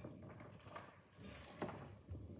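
Faint room noise of a quiet hall, with scattered small knocks and rustles and one sharper click about one and a half seconds in.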